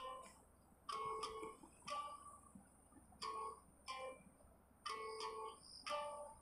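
Faint background music: single plucked-string notes with sharp attacks, played slowly at roughly one note a second.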